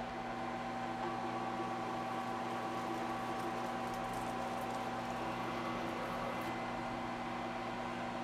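Milling machine running in back gear, at slow spindle speed, with a one-inch end mill cutting down into an aluminium plate: a steady hum with a few constant tones.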